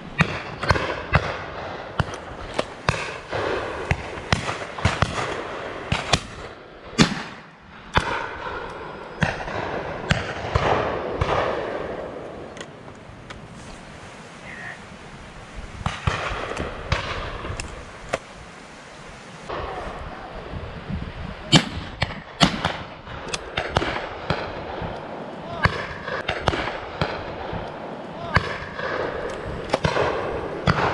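Shotguns firing on a driven pheasant shoot: a long irregular series of shots from the line of guns, some sharp and close, others fainter and farther off, often several within a second or two.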